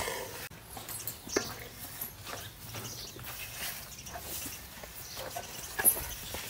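A young elephant shifting in its pen of wooden rails, its trunk against a rail: faint scattered knocks and rustles, with a sharper click about a second and a half in and another near the end.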